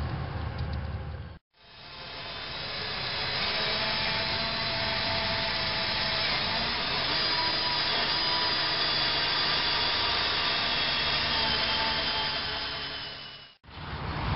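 Electric drill with a small bit running steadily, drilling a pilot hole through a fiberglass boat hull, with a steady whine that wavers slightly in pitch. It starts after a brief silent break about a second and a half in and stops abruptly just before the end.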